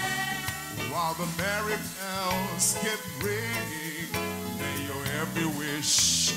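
Live band music: held chords over a bass line, a gliding melodic lead line entering about a second in, and two cymbal crashes, one near the middle and one at the end.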